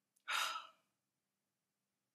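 One short, breathy exhale or intake of breath from a woman, lasting under half a second near the start.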